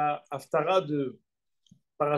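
A man speaking: two short phrases, then a pause of about a second.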